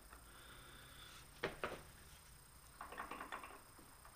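A few faint, quick metallic clicks of steel lathe change gears being handled and meshed on the end gear train, clustered about three seconds in, over a low steady hum.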